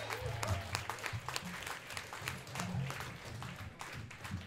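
Sparse applause from a small standing audience just after a song ends, separate hand claps heard one by one, with a faint low hum underneath.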